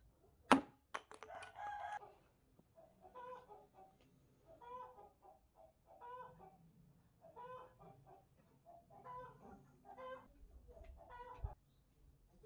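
A sharp chop or knock about half a second in, with a few light clicks after it, then a chicken clucking in short calls about every second and a half.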